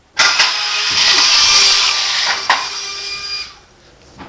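Electric ducted fan on a pinewood derby car switching on with a click as the start gate drops, then running with a steady high-pitched whine as the car runs down the aluminum track. A sharp knock comes about two and a half seconds in, and the whine fades out near the end.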